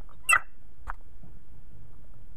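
Two brief squeaks, the first sharper and louder, about half a second apart, from the air filter assembly of an ATE T50 vacuum brake booster under test; the assembly is letting a little vacuum leak through.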